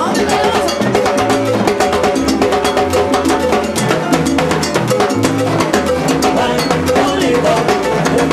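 Live salsa band playing: fast, dense percussion over a bass line, with singers on microphones.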